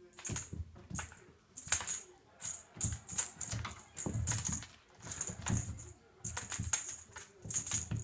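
A kitten scrabbling and pouncing on a wooden floor while tugging a string toy caught on a chair leg: irregular clusters of quick clicks and taps.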